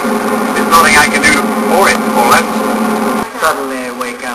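Steady engine and road drone inside a vehicle moving at highway speed, under a man's voice; it cuts off about three seconds in.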